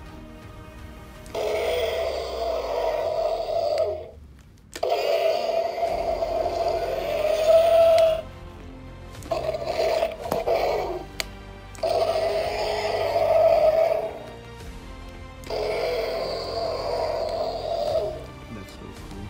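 Electronic roar sound effects played through the small speaker of a Camouflage 'n Battle Indominus Rex dinosaur toy, set off as its light-up camouflage feature is pressed. There are five bursts of two to three seconds each, with short quiet gaps between them.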